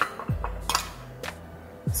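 Several sharp clinks of a metal measuring cup knocking against a bowl as diced green bell pepper is tipped into a corn salad, over background music with a steady low beat.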